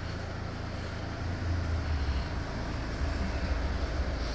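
Low, steady rumbling background noise, with no distinct events.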